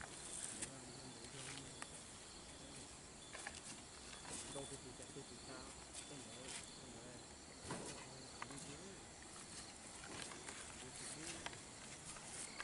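Quiet outdoor ambience: faint distant voices with insects chirping and a few soft clicks.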